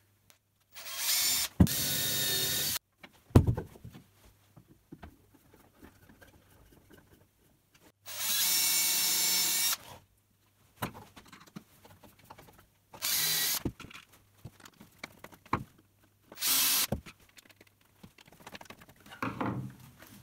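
Cordless drill/driver running in four bursts, driving screws to fix a plywood baffle inside a plastic bucket. The first two runs last about two seconds each and the last two are short. Small knocks and clicks of the bucket being handled fall between them.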